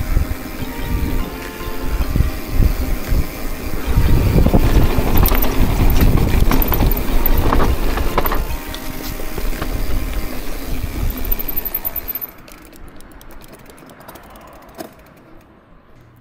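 Mountain bike riding down a dirt trail: tyres rushing and rattling over the ground, with wind noise, loudest in the middle. The riding noise dies down about twelve seconds in as the bike slows. Background music plays under it and fades out partway through.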